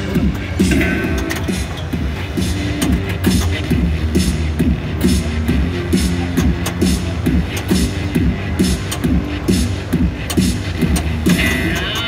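Prototype Hot Wheels pinball machine in play: its game music with a steady repeating beat, and sharp clicks of flippers and ball scattered through it.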